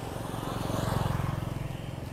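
Motor scooters passing close by on a paved road, their small engines running with a steady pulse that grows louder to about a second in and then fades as they go past.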